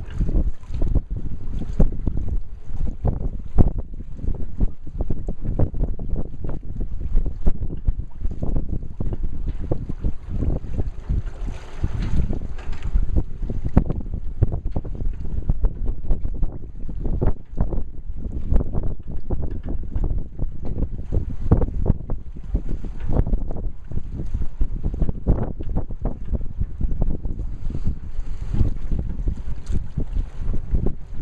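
Wind buffeting the microphone: a continuous low, gusty rumble with irregular thumps, and no steady pitch.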